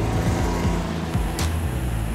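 Can-Am Ryker three-wheeled motorcycle's engine running, its note gliding in pitch as the throttle changes, under background music.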